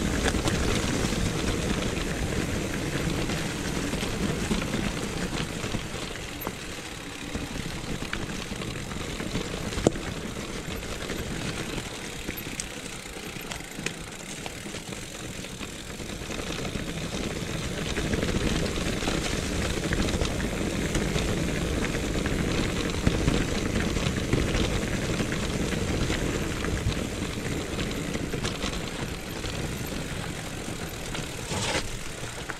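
Mountain bike descending a leaf-covered stony trail: a steady rumble of tyres on stones and leaves with rattling and occasional sharp clicks from the bike. It quietens for several seconds in the first half, then grows louder again.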